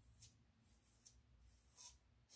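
Near silence with two faint scrapes of a razor drawn over short stubble on the scalp behind the ear: a small one just after the start and a longer one near the end.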